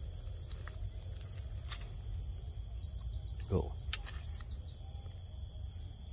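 Crickets chirping steadily, a high-pitched pulsing trill, over a low rumble.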